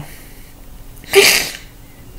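A man sneezing once: a single short, sharp burst about a second in.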